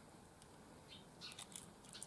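Near silence, with a few faint small metallic clicks in the second half as jewelry pliers grip and bend a small gold-tone metal finding on a chain.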